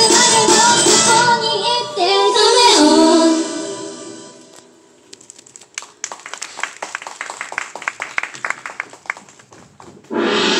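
Two female idol singers singing over a pop backing track; the song fades out about four seconds in. Audience clapping follows for the next few seconds.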